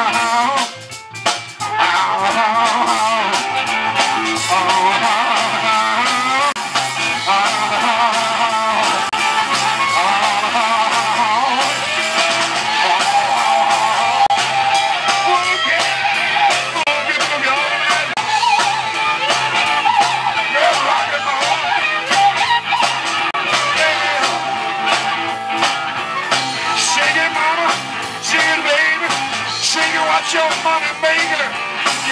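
Live electric blues band playing an instrumental stretch: electric guitar, bass, drums and keyboard, with blues harmonica playing bending notes over the top. The band drops out briefly about a second in, then comes back in.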